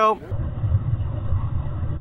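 Amateur tribrid rocket motor (nitrous oxide burning with a hybrid fuel grain and ethanol, lit by a small APCP starter) firing just after ignition: a steady low rumble.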